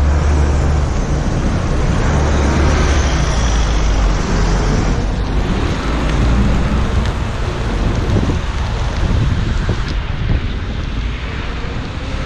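Steady wind rush on the microphone of a moving bicycle, heaviest in the low end during the first few seconds, with road traffic running alongside.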